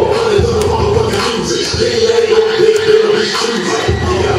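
Loud hip-hop music with a steady beat.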